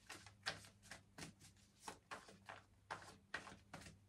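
A deck of tarot cards being shuffled by hand: a soft, irregular run of faint card clicks, a few a second, over a low steady hum.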